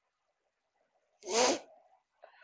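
A single short, explosive burst of breath and voice from a man, a little past halfway, lasting a fraction of a second.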